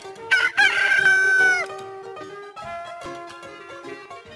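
A rooster crowing once: a single cock-a-doodle-doo of about a second and a half, starting a moment in and falling away at the end. Light background music plays under it.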